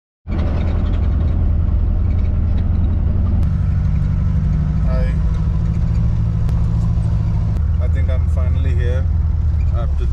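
Car engine and tyre noise heard from inside the cabin while driving: a steady low drone whose engine note shifts a little over three seconds in. A voice speaks briefly near the end.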